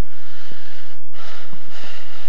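Steady low electrical hum on an old camcorder recording, with a breathy rush of noise on the microphone in the second half.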